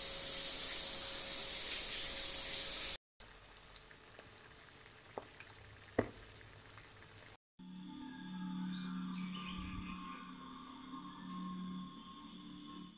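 A shower running, a loud steady hiss of spray for about three seconds. After a sudden cut, eggs frying in a pan with a soft sizzle and a few sharp pops. After another cut, music with held low notes.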